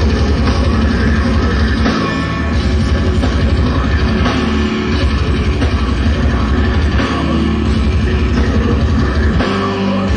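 Heavy metal band playing live: a drum kit with dense, driving kick drums under distorted electric guitars, taped from the audience.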